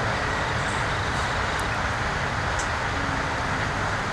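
A steady rumbling background noise, even and unbroken.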